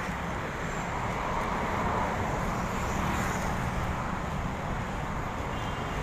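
Steady road-traffic noise from the street, swelling slightly a couple of seconds in.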